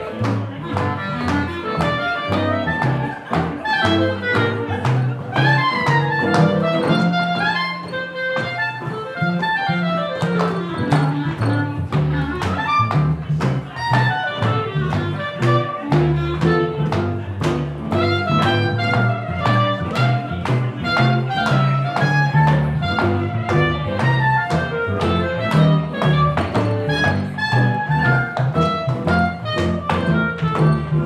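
Small live jazz band playing a swing tune, with an upright double bass and a guitar over a steady beat.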